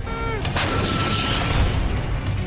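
Artillery fire in war footage: a short falling tone, then about half a second in a heavy blast sets off a long, loud rumble.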